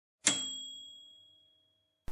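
A single bright chime, struck once near the start and ringing out as it fades, one high tone lingering for over a second.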